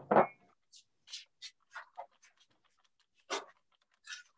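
A string of short, soft rustles from a paper towel being picked up and handled, about half a dozen separate brief bursts.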